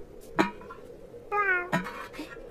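A cartoon cat's meow, voiced by a person imitating a cat: a brief sharp sound about half a second in, then one slightly falling meow of about half a second in the second half.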